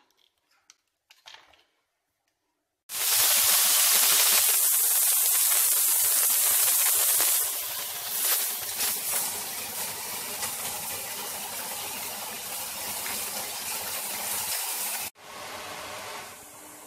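Shredded cabbage and carrot sizzling in hot oil in a frying pan. The loud sizzle starts suddenly a few seconds in, then settles to a quieter sizzle with light knocks of the wooden stirring spoon. Near the end it changes abruptly to a softer sizzle of noodles frying in the pan.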